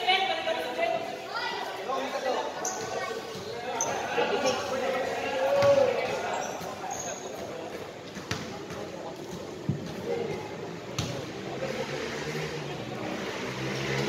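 A basketball bouncing on a concrete court during a game, under players' and onlookers' voices. The voices are loudest in the first half, and a few sharp knocks come in the second half.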